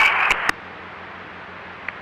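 Police scanner radio between transmissions: the end of a transmission cuts off with a sharp click about half a second in, leaving a steady static hiss.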